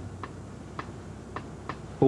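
A car's turn signal ticking, about two ticks a second, over the low steady hum of the car's cabin.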